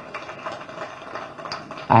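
Faint room noise in a pause between spoken phrases, with a few soft clicks.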